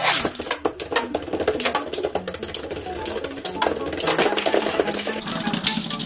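Two Beyblade Burst spinning tops launched into a plastic stadium, then spinning and colliding with rapid, irregular clacking and rattling. Music plays underneath.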